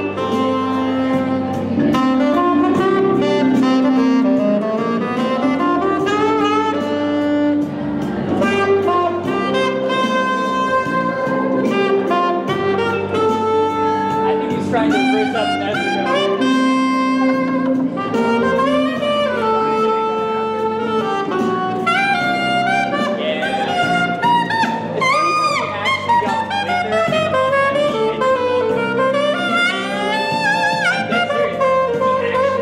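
Saxophone played live: a continuous melody of held notes and quick runs.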